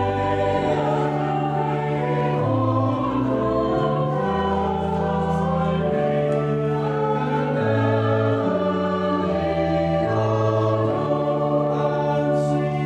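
Church choir of mixed men's and women's voices singing an anthem in slow, held chords.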